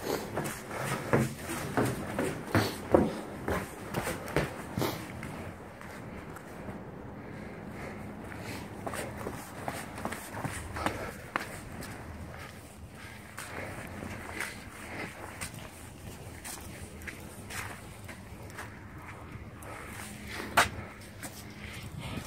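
Footsteps going down outdoor stairs: a steady run of firm steps, about two a second, for the first five seconds or so, then softer, irregular steps and shuffling on the ground.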